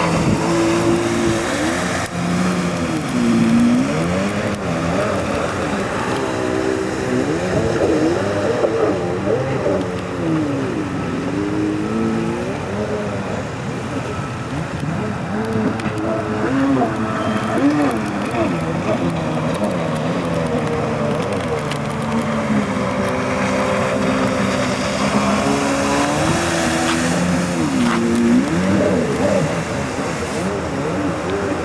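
Stand-up jet ski's two-stroke engine running hard, its pitch rising and falling again and again as the rider works the throttle through turns.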